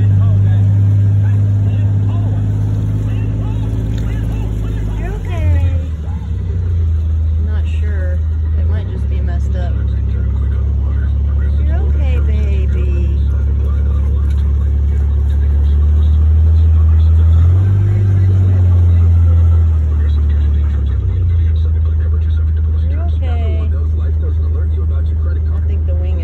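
Car engine running with a steady low hum that shifts up and down in level several times, with a few faint short chirps above it.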